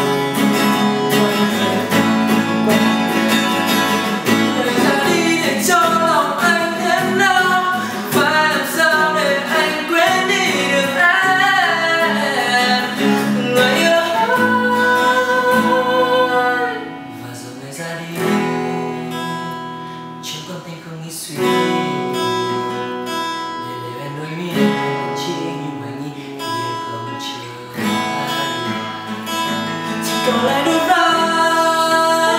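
Acoustic guitar accompanying male voices singing a pop song in a vocal group arrangement. About halfway through it drops to a quieter, softer passage.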